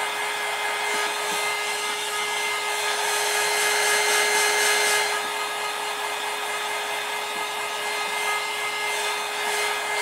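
Electric heat gun blowing hot air on freshly poured epoxy: a steady fan rush with a constant hum-like tone, a little louder for a couple of seconds near the middle.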